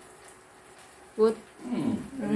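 A man's voice in a quiet kitchen: a short spoken word ("good") about a second in, then a low, drawn-out vocal sound that slides down in pitch near the end.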